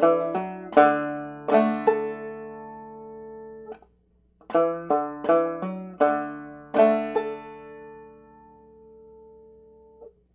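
Open-back banjo played clawhammer style: a short phrase of plucked notes with pull-offs and a hammer-on that resolves to a basic strum, whose chord is left ringing. The phrase is played twice, with a brief pause after the first, and the second chord rings out until it fades.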